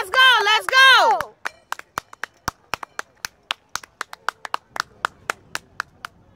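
A high, wavering shouted cheer that breaks off in a falling pitch about a second in, followed by a spectator's hand clapping: sharp single claps, about three or four a second, irregularly spaced.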